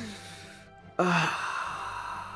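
A man's breathy exhalation, then about a second in a louder voiced sigh that trails off. Soft background music plays underneath.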